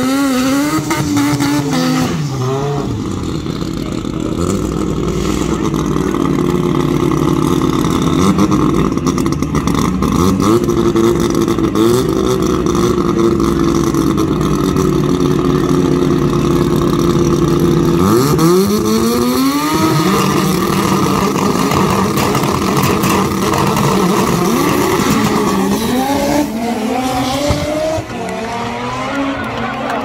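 Drag racing cars at the start line, engines revved and then held at a steady high pitch for many seconds, before launching about two-thirds of the way in with the engine pitch climbing sharply, and climbing again a few seconds later.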